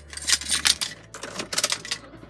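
A quick, irregular run of light clicks and rattles inside the cab of a Toyota Tundra as the truck is being started, with a low hum that stops a little under a second in.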